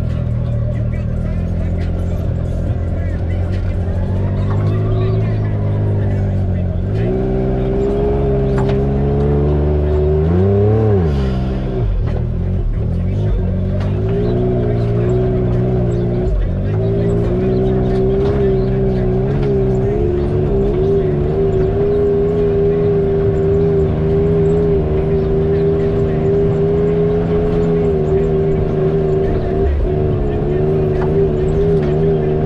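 Side-by-side UTV engine heard from inside the open cab, running at low revs while the machine crawls over rock. Its note rises and falls with short throttle blips a few times in the first half, then holds steady near the end.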